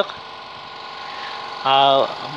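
Steady electric hum of a homemade coal stove's small blower fan motor running. Near the end a man's voice cuts in with a long drawn-out vowel, louder than the hum.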